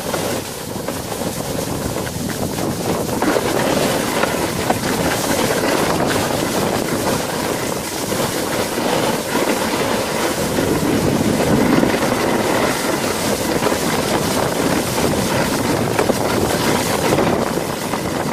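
Sled sliding fast over packed snow: a continuous rushing scrape from the runners, mixed with wind on the microphone, a little louder after the first few seconds.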